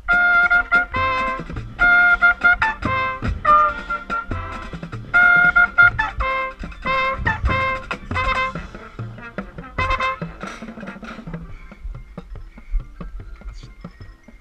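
Marching band brass playing loud, punchy phrases, led by a trumpet right at the microphone. The brass stops about ten and a half seconds in, leaving only soft scattered taps.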